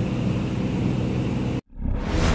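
Steady low drone of an aircraft engine, which cuts off abruptly about one and a half seconds in. A new sound swells up just before the end.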